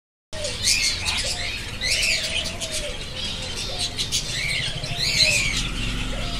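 A flock of caged budgerigars chirping and chattering, with many short warbled chirps overlapping continuously.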